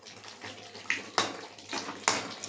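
Eggplant cubes frying in hot oil in a kadai: a steady sizzle that flares up sharply about a second in and again near the end as more pieces go into the oil.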